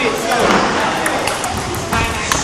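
Table tennis ball clicking off the bats and table during a rally, a few sharp knocks, over background chatter of many voices in a sports hall.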